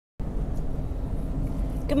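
Steady low rumble of a car, heard from inside the cabin.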